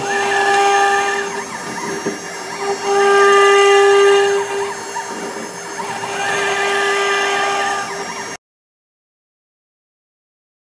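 CNC router spindle running with a steady high whine as its bit cuts into the wood, with a wavering tone over it as the machine moves the bit. The sound swells a few seconds in and cuts off suddenly near the end.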